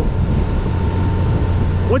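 Steady low rumble of a 2018 Honda Gold Wing DCT Tour ridden at town speed: its flat-six engine running under wind noise on the rider's camera microphone.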